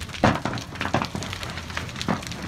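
A house fire burning, with irregular sharp cracks and pops from the flames.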